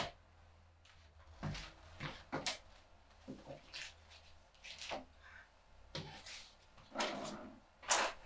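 Faint, irregular knocks and rustles of a hand searching through clothing and then a wooden desk drawer, with the drawer sliding open and its contents being shuffled near the end.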